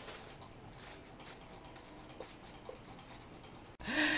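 Faint, irregular crinkling rustle of aluminium foil and a light clatter of a metal cake tin on a wire rack as a baked chiffon cake in its tin is turned upside down. A short, louder rustle comes near the end.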